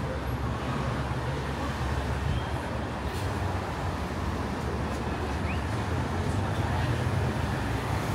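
Road traffic on a busy street: cars driving past, heard as a steady engine and tyre rumble.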